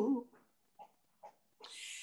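A sung note of a woman's voice ends just after the start, followed by a near-silent pause holding two faint, very short sounds and a soft breath-like hiss near the end, just before the singing comes back in.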